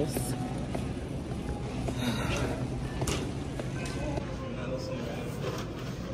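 Big-box store ambience: a steady low hum with faint, indistinct background voices and a few small clicks and clatters.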